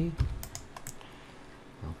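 Several quick keystrokes on a computer keyboard, clustered in the first second, typing a rotate command.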